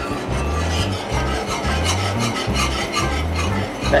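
Metal wire whisk scraping through thick roux in a cast iron skillet, in repeated rasping strokes a few times a second. Background music with a steady repeating bass runs underneath.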